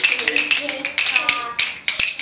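A group of children tapping wooden rhythm sticks together, a scatter of sharp clicks that do not fall in step, with young voices chanting along.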